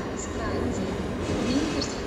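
An SBB RABe 501 Giruno electric train approaching along the station tracks: a steady rumble of wheels and running gear on the rails.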